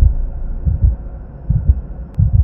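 Deep bass thumps coming in pairs, about one pair every 0.8 seconds like a heartbeat, over a faint low hum: the sound design of an animated logo intro.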